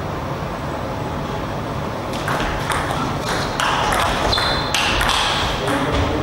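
Table tennis rally: the celluloid ball clicking sharply off rackets and table in quick alternation, about two to three hits a second, starting about two seconds in. A steady low hum runs underneath.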